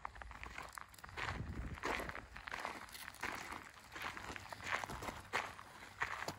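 Footsteps on a gravel driveway, several people walking at a steady pace of about two steps a second.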